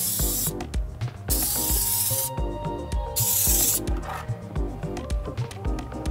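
Aerosol spray can of primer hissing in three short bursts of about a second each as a coat is sprayed onto plastic wheel centre caps. Background music with a steady beat plays underneath.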